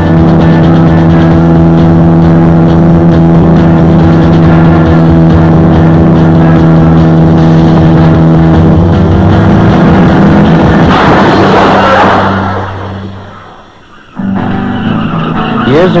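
Car engine running steadily at speed, mixed with music on a film soundtrack. About eleven seconds in a rushing noise rises over it, then the sound fades away and a new sound cuts in shortly before the end.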